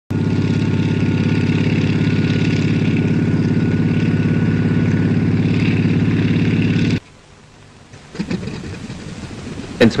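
A large engine running steadily at one pitch with a fast, even pulsing beat, which cuts off abruptly about seven seconds in. A voice starts speaking near the end.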